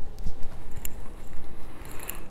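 Handling noise from a handheld camera being moved: an uneven low rumble with a few light clicks and knocks.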